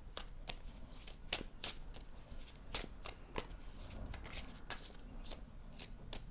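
A deck of tarot or oracle cards being shuffled by hand, the cards giving light, irregular snaps as they slide and slap together, two or three a second.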